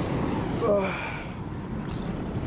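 Steady rush of white water churning below a dam spillway. A short vocal exclamation comes less than a second in.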